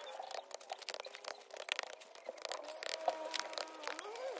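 Gloved hands patting and packing a heap of snow: an irregular run of short crunchy pats and scrapes.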